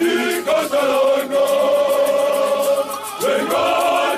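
A group of men singing together in chorus. The voices hold one long note for a couple of seconds, then move on to a new phrase near the end.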